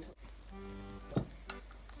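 Soft background music with steady held notes. About a second in, a sharp click and a smaller one just after, from fingers working the pull-tab lid of a small can.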